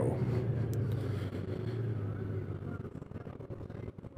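Honda Gold Wing motorcycle's flat-six engine and road noise: a steady low hum that fades away over a few seconds as the bike slows in traffic.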